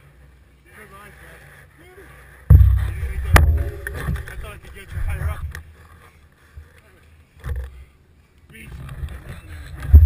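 Irregular low rumbling bursts of buffeting on a bicycle's handlebar-mounted action camera as the bike rolls slowly on pavement. The first starts suddenly about two and a half seconds in, and the loudest comes at the very end. Faint voices of people sound in the background.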